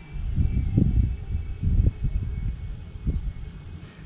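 Wind buffeting an outdoor microphone: an uneven low rumble that swells and fades in gusts.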